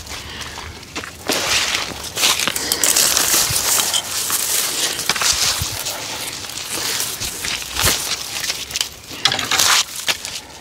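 Saplings and branches rustling, cracking and being dragged through undergrowth as brush is cleared by hand, in irregular bursts with scattered sharp snaps.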